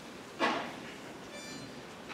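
Hushed concert hall waiting for a song: low room noise, broken by one short, sharp noise about half a second in and a faint, brief high-pitched squeak about a second later.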